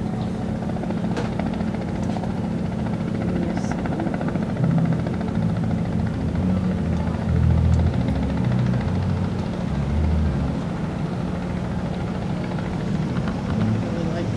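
A steady low mechanical hum, like a motor or generator running, with irregular low rumbles over it.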